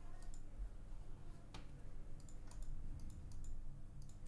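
A few scattered, sparse clicks of a computer mouse and keyboard, over a low steady hum.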